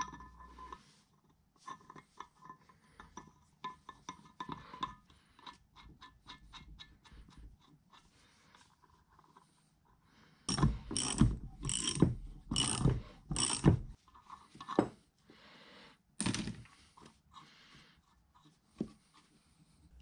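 Steel stud and nut being screwed into the cast-iron overarm support of a Kearney & Trecker horizontal mill, threads freshly coated with blue Loctite. Scattered small metallic clicks first, then about halfway through a few seconds of louder metal scraping and clanking, about two strokes a second, and one more clank a little later.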